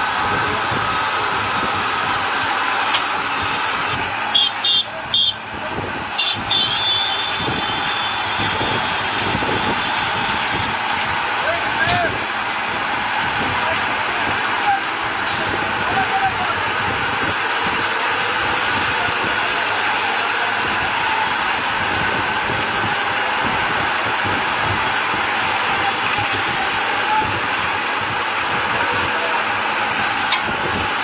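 Steady heavy-vehicle noise from a slow-moving heavy-haulage truck and multi-axle modular trailer, with indistinct voices mixed in. A few brief high-pitched sounds come about four to seven seconds in.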